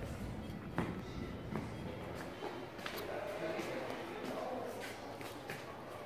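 Indoor ambience of a waiting lounge: a murmur of background voices with scattered clicks and knocks, the sharpest about a second in, and light footsteps.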